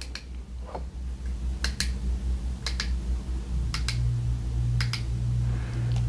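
Sharp plastic clicks, a few about a second apart, as a USB-C charging cable is pushed into a USB digital tester and the tester is handled, over a steady low hum; a low steady tone joins about four seconds in.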